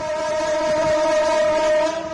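Diesel-electric locomotive horn sounding one long steady blast that cuts off near the end.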